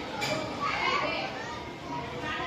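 Several children talking and calling over one another in the background.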